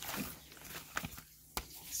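Faint rustling of a stack of Seachem plastic fish-shipping bags handled in a plastic crate, with a couple of light clicks about a second and a second and a half in.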